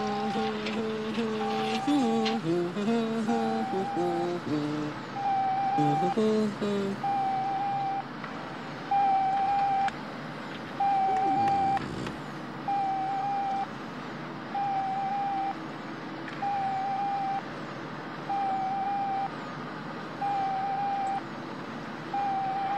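Electronic beeping from a computer terminal: a steady single-pitch beep about a second long, repeating about every two seconds. It is preceded by several seconds of electronic tones stepping up and down in pitch.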